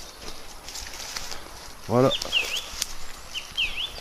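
Song thrush singing at night: a short whistled phrase of quick down-and-up swooping notes, given twice about a second apart, the species' habit of repeating each phrase.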